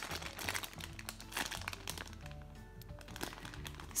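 Clear plastic packaging crinkling in irregular crackles as a squishy toy is squeezed and handled inside its bag, over soft background music.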